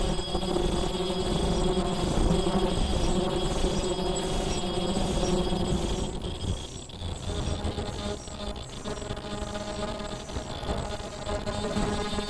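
Disposable shower cap making machine running, a steady mechanical sound with a soft repeating beat about twice a second. The sound dips and shifts a little about six seconds in.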